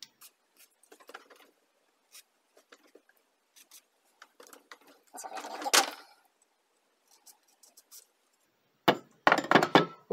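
Aerosol penetrating lubricant sprayed in a hissing burst of about a second onto seized knobs, to loosen them for removal. Light clicks and taps of handling come before it, and a short burst of rapid clattering comes near the end.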